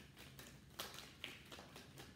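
Faint hand shuffling of a tarot deck: a scattering of soft taps and clicks as the cards slip against one another.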